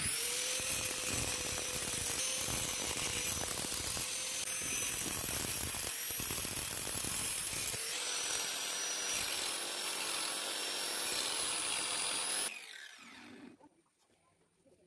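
Angle grinder grinding the tapered point of a steel center punch clamped in a vise. It runs up at once to a steady high whine with grinding noise, its pitch sagging slightly as the disc is pressed against the steel. It is switched off near the end and spins down within about a second.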